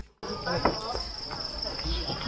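A steady high-pitched insect buzz sets in just after the start, over scattered footsteps knocking on wooden bridge planks.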